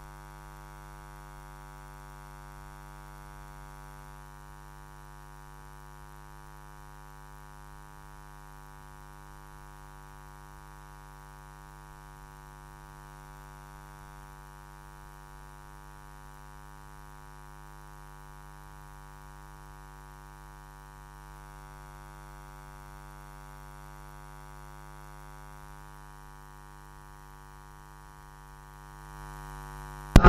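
Steady electrical mains hum, a low buzz with a stack of even overtones, held at a constant low level in the audio line.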